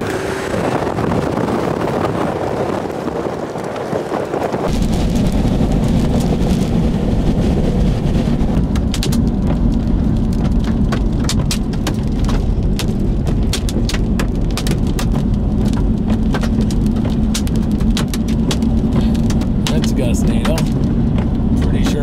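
Wind and road noise in a moving vehicle, the low rumble of driving growing stronger about five seconds in. From about nine seconds on, hailstones strike the vehicle in sharp, irregular clacks.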